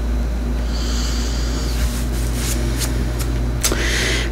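A steady low hum, with a brief rustle and a few sharp clicks in the second half as tarot cards are handled and drawn from the deck.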